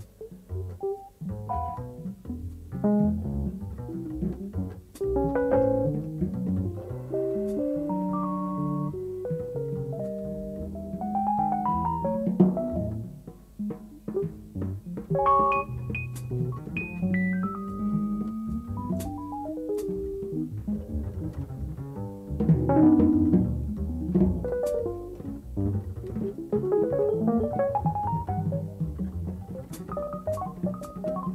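Live jazz-rock improvisation: a Fender Rhodes electric piano plays runs and chords over a double bass line, with sparse light cymbal strokes.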